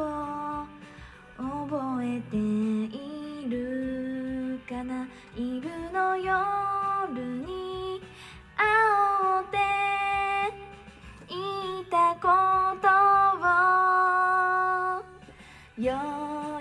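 A young woman singing a slow Japanese pop Christmas song into a handheld microphone, in long held notes that rise and fall, over a quiet backing track.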